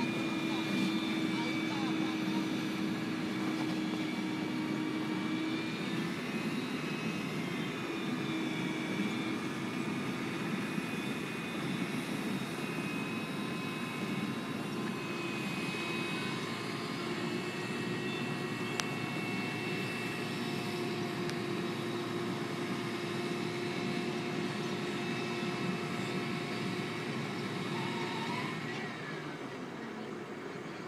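Cotton module truck's diesel engine running steadily under load with a whine from its drive, as the tilted bed takes on a cotton module; the pitch shifts slightly a few times, and the sound eases a little near the end.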